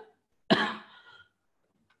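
A man coughs once, a single sharp cough that trails off within about a second.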